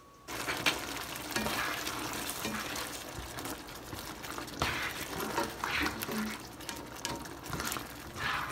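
Tomato-paste and broth gravy with carrots and onions simmering in a frying pan, stirred with a plastic spatula: a steady wet bubbling hiss with occasional scrapes of the spatula against the pan.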